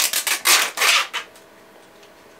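Rustling and scraping of packaging being handled, about five or six short scratchy strokes in the first second or so.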